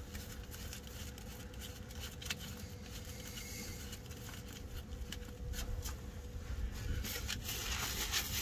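Faint handling sounds of a rubber fuel hose being worked back onto a FASS fuel pump's fitting by a gloved hand: scattered light clicks and rubbing over a low steady rumble.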